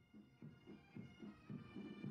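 Faint bagpipe music with a steady beat of about four pulses a second.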